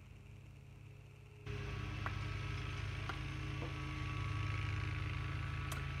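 Steady low mechanical hum with hiss, like a motor running, that steps up sharply in level about a second and a half in, with a few faint ticks.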